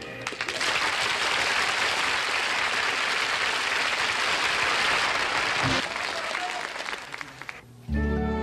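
Studio audience applauding, a dense steady clapping that thins out and stops shortly before the end.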